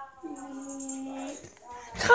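A boy's voice holding one steady, level-pitched note for about a second.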